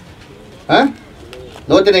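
A man speaking in short bursts: one brief syllable about two-thirds of a second in, then speech resuming near the end, with a low steady hiss in the pauses.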